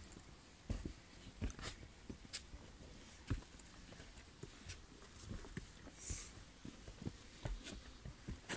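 Footsteps of hikers climbing a steep dirt trail laced with tree roots: irregular soft thuds and scuffs, a step every half second to a second.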